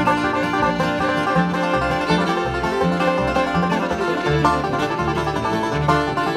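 Bluegrass string band playing an instrumental break: five-string banjo picking rapid notes alongside fiddle and acoustic guitar, with an upright bass keeping a steady beat of about two notes a second.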